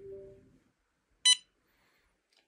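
Touchscreen board's buzzer giving one short, sharp electronic beep about a second in as the ESP32 siren monitor powers up. A fainter low steady tone is heard in the first half second.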